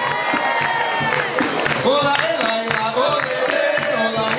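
Live capoeira roda music: atabaque drum and berimbaus with hand clapping and singing, and a crowd cheering. A long high note is held through the first second.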